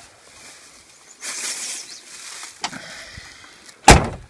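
Rustling of a plastic bag being handled and pulled out of a pickup truck cab, with a small click, then a single sharp knock near the end that is the loudest sound.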